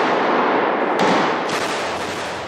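Rifle fire during a close-quarters drill, echoing in a bare brick hall, with one sharp shot about a second in and a long fading reverberation.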